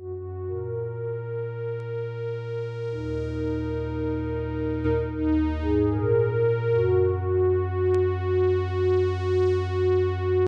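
Cherry Audio Minimode software synthesizer, an emulation of the Minimoog Model D, playing a preset as sustained chords with a steady pulsing wobble about twice a second. The chord changes about three seconds in and again around seven seconds in.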